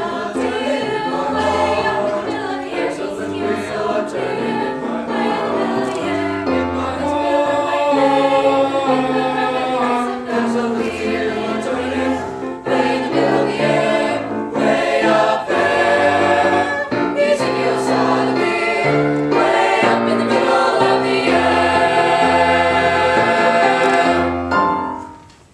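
Mixed choir of young male and female voices singing a sustained, slow choral piece with piano accompaniment.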